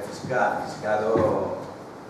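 Speech: a voice talking briefly, off the microphone and with room echo, with a light knock about a second in.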